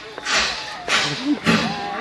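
A man blowing three short, hissing puffs of breath through a handheld microphone, miming blowing out candles, with a low vocal grunt between the last two puffs.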